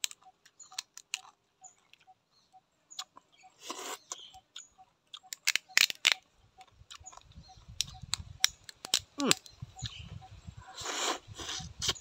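Small rice-field crab shells being cracked and snapped apart by hand, many sharp clicks, with loud sucking slurps about four seconds in and again near the end as the meat is sucked out of the shell.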